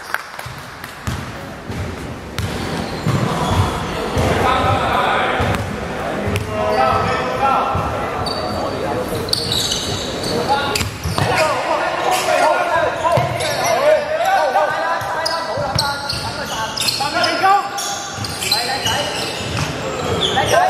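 A basketball bouncing and being dribbled on an indoor hardwood court, echoing in a large sports hall, with players' voices calling out over it.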